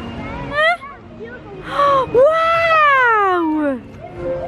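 A high-pitched voice calling out without words: a short rising call about half a second in, a brief call near two seconds, then a long, loud call that slides down in pitch over the second half.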